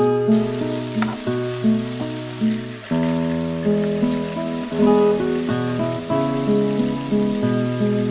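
Acoustic guitar background music with a steady rhythm of chords. Under it is a faint steady hiss of thinly sliced beef sizzling in a hot pan.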